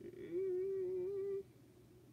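A woman humming a drawn-out, slightly wavering 'hmm' for about a second and a half while thinking, then faint room tone.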